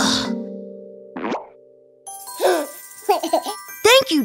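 Cartoon soundtrack: held music notes fading out, a short pop sound effect about a second in, then a child's wordless vocal sounds over light music.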